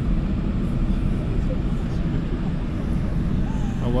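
Steady cabin noise inside a jet airliner standing at the gate: an even low rumble with hiss from the aircraft's air and machinery, unchanging throughout.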